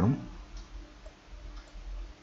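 The last of a man's spoken word, then a steady low hum and hiss from the recording.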